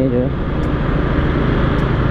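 Yamaha automatic scooter's engine running steadily while cruising at about 30 km/h in traffic, with wind and road rush on the microphone.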